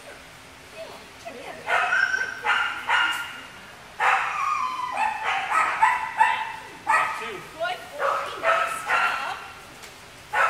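A dog whining and yelping in repeated high-pitched cries, starting about two seconds in and carrying on almost without a break. It is crying for its owner while a stranger handles it.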